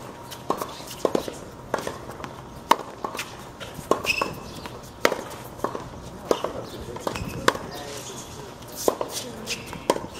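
Tennis ball being struck by rackets and bouncing on a hard court during a rally. Sharp pops come irregularly, about once a second, with footsteps on the court between them.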